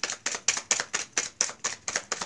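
A deck of tarot cards being shuffled by hand, overhand: a rapid, even run of crisp card slaps, about six or seven a second.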